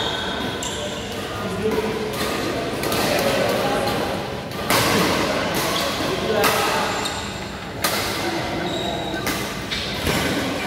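Badminton rackets smacking a shuttlecock a few times, sharp cracks a couple of seconds apart, with shoe squeaks on the court floor over a steady chatter of players' voices echoing in a large hall.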